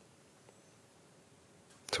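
Near silence: faint room tone, with one small click about a quarter of the way in. A man's voice begins right at the end.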